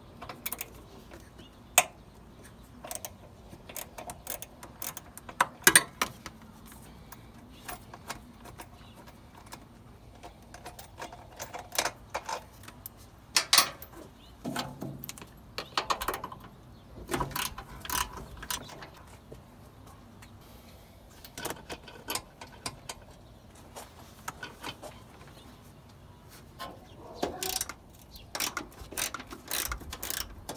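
Irregular clicks, taps and knocks of hands handling the plastic air box, intake hose and wiring connectors in a Mazda Miata's engine bay.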